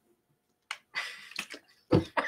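A plastic water bottle being drunk from: a few short sloshing bursts and clicks after a brief silence, with a low thump near the end.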